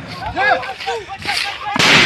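Gunfire in a firefight: a fainter shot about a second in, then a loud gunshot near the end that rings on, with men shouting in the background.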